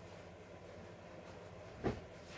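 A single dull thump near the end, over a steady low background hum.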